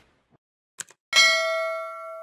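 Two quick click sound effects, then just after a second a single bright bell ding that rings on and slowly fades: the sound effect of an animated subscribe button being clicked and its notification bell rung.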